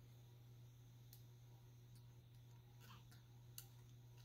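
Near silence: room tone with a steady low hum and a few faint, scattered ticks.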